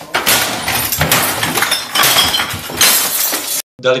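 Things being smashed, with glass breaking: a run of loud crashes about once a second that cuts off suddenly just before the end.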